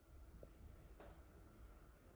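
Near silence: faint background rumble with a soft click about a second in.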